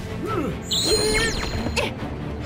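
Cartoon soundtrack music with comic sound effects: short swooping notes that rise and fall, then a high sparkly shimmer of falling sweeps about halfway through.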